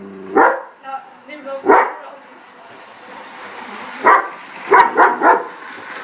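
Young German Shepherd barking at a toy train it is scared of: six short barks, one about half a second in, one near two seconds, then four in quick succession from about four to five and a half seconds.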